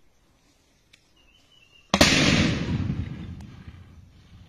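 A single heavy-weapon explosion about two seconds in: a sudden loud boom followed by a rumble that fades over about two seconds, as a smoke plume rises far down the road.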